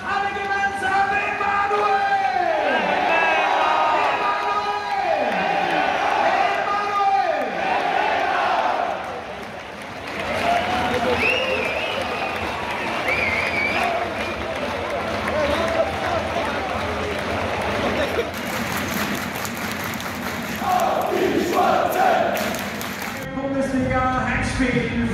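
Football stadium goal celebration: the scorer's name called out in three long drawn-out shouts, each falling away at the end, by the announcer and crowd, then a loud crowd roar with cheering and whistles.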